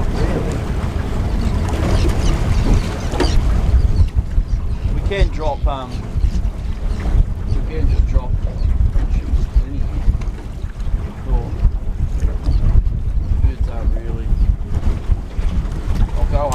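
Wind buffeting the microphone on an open fishing boat at sea: a steady low rumble with water sounds mixed in, and brief faint voices about five seconds in.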